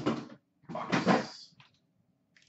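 Two loud handling sounds close to the microphone as the card tins are handled: a short knock at the start, then a rougher scrape or rustle lasting under a second.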